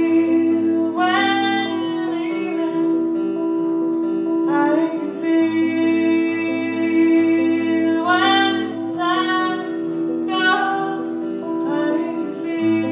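Live folk music: two acoustic guitars playing a steady accompaniment, with a woman's singing voice coming in short phrases about a second in, midway, and several times near the end.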